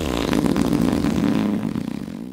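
Low, buzzy sound effect with a rough pitched drone that starts to bend down in pitch near the end.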